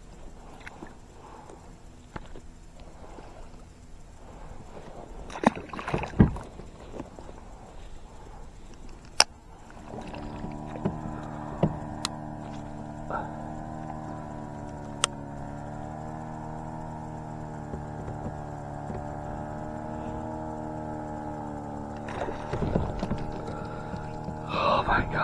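Knocks and clicks of gear being handled in a plastic kayak. From about ten seconds in a steady mechanical drone with a slightly wavering pitch sets in and runs until a louder burst of splashing and handling noise near the end.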